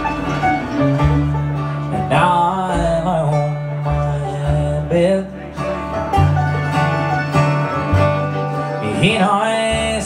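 Live bluegrass band playing: banjo, acoustic guitar, mandolin and upright bass together, the bass changing notes about once a second.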